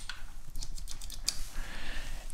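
Small sharp clicks and taps of fingers handling the moped carburetor's throttle cable fitting, a quick run of them in the first half.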